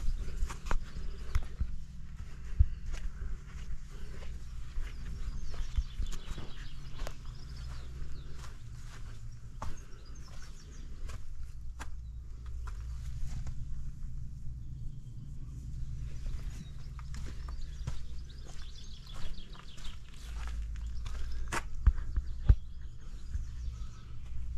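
Footsteps and scattered short knocks from a handheld camera being moved about, over a steady low rumble of wind on the microphone, with faint bird chirps now and then.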